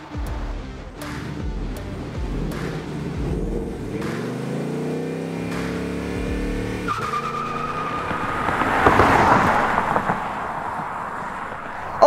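Ford Mustang GT's 5.0 Coyote V8 revving, its pitch rising for a few seconds before cutting off suddenly, then tyres squealing for about two seconds, the loudest part, over background music.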